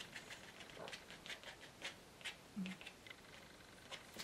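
Faint, irregular scratchy strokes of a plastic card being scraped across damp watercolour paper, lifting out paint for texture.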